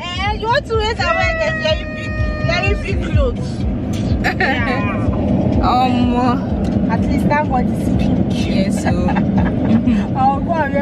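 Steady car road and engine rumble heard inside the cabin of a moving car, under women's voices talking and exclaiming, with long drawn-out vocal notes in the first few seconds.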